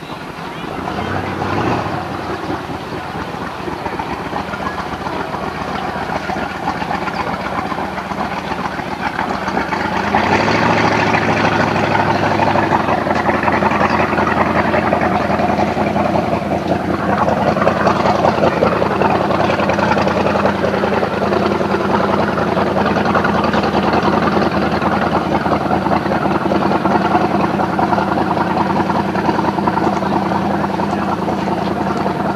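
Small motorboat's engine running steadily, growing louder about ten seconds in.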